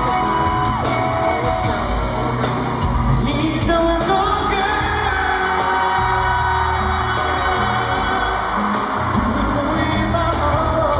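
Live pop song played over an arena sound system: a male lead vocal sung into a handheld microphone over the band's accompaniment, heard from the audience.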